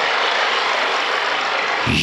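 A loud, steady rushing noise with no voice over it, running on unchanged in a pause between spoken lines.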